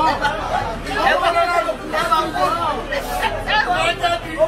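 Speech only: people talking and chattering.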